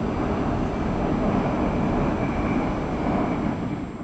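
Steady jet noise from a formation of BAE Hawk display jets flying overhead, with a faint high whine over the low rumble.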